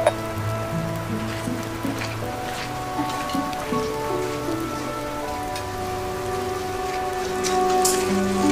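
Rain falling steadily, under soft background music of sustained notes that change slowly in pitch.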